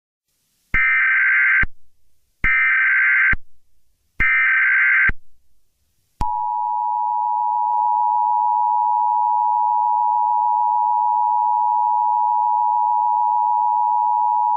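Emergency Alert System tones: three SAME header data bursts, each just under a second with short gaps between them, encoding an Emergency Action Termination. About six seconds in, the steady two-tone EAS attention signal (853 and 960 Hz) starts and holds to the end.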